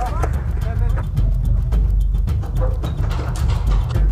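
Paintball markers firing on the field, scattered irregular pops over a steady low rumble, with brief shouted voices.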